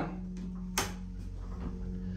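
Steady low hum of a Burlington hydraulic elevator running as the car rises, heard from inside the car, with one sharp click a little under a second in.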